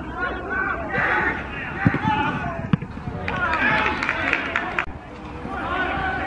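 Voices of footballers and spectators shouting and calling out, with no clear words, over background crowd chatter. Two sharp knocks come about two seconds in.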